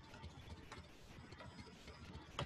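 Near silence: faint room tone with soft, irregular low clicks.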